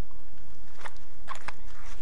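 Four short scratchy clicks close to the microphone over a steady low hum: contact noise from handling at the microphone, with an iguana pressed against a fleece jacket.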